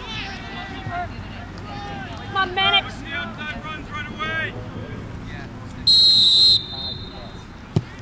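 A referee's whistle blows one short, loud blast about six seconds in, signalling the restart of play, and just over a second later a soccer ball is struck once with a sharp thud.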